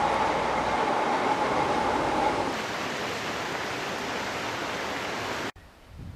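Red electric train running along a hillside line: a steady rushing rumble with a held whine that stops about halfway through. The sound then cuts off abruptly near the end.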